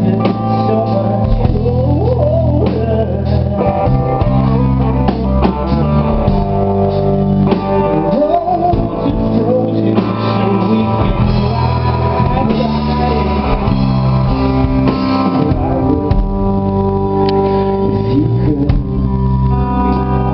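A live rock band playing a song, with drum kit, electric guitar and keyboard under a sung lead vocal.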